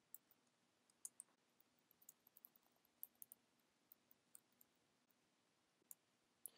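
Faint, irregular clicks of computer keyboard keys being typed, about a dozen scattered keystrokes over near silence.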